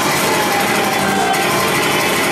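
Live rock band playing loudly: a dense, steady wash of sound with a few held notes and no clear singing.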